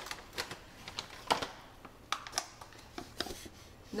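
Irregular sharp clicks and crinkles of plastic powder pouches being handled: one stand-up pouch pressed shut along its top and another opened for scooping. The loudest click comes a little over a second in.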